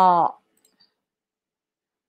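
A woman speaks one short Thai syllable at the start, then there is dead silence.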